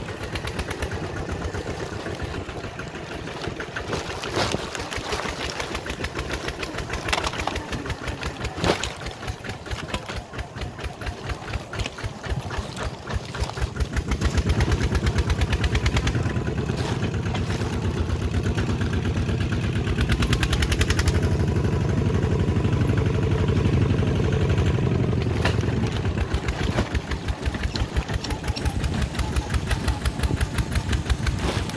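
Two-wheel walk-behind tractor's single-cylinder diesel engine chugging steadily as it pulls a trailer along a rough dirt track. It runs louder and heavier from about halfway through, with a few sharp knocks and rattles along the way.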